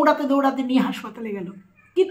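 A woman speaking Bengali in an exaggerated, drawn-out voice, with a long held, wavering vowel in the first second. She breaks off briefly near the end.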